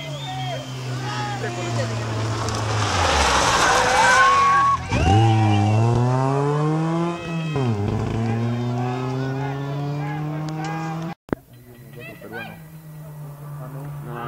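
Rally car engine passing through a gravel corner. The note drops as it brakes, and there is a loud rush of noise as it slides, then it revs up and down through the gears as it accelerates away. The sound cuts off abruptly about eleven seconds in, leaving it much quieter.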